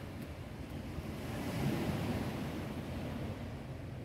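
Gentle sea surf washing, with wind rumbling on the microphone; the wash swells a little louder about halfway through.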